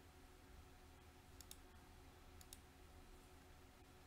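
Near silence broken by two faint pairs of quick computer mouse clicks, about a second and a half in and again a second later.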